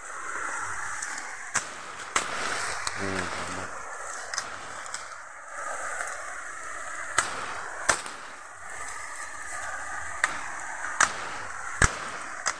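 Bamboo leaves and stems rustling and brushing as someone pushes through a dense thicket, with several sharp cracks or taps scattered through it.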